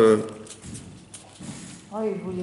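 A man's drawn-out spoken 'euh' trailing off, then a pause of low room tone with a few faint clicks, and speech starting again at the very end.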